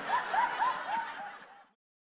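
A person laughing in a quick run of about five high 'ha' notes, cutting off abruptly near the end.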